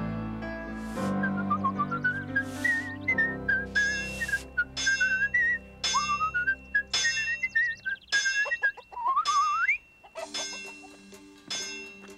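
Blacksmith's hammer striking a red-hot sword blade on an anvil: sharp metallic clangs about every half second for several seconds. Light music plays along, with a high, wavering whistle-like melody over it.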